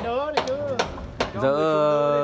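A few sharp wooden knocks from timber planks being handled as a wooden stilt house is taken apart, with a man's voice talking over them.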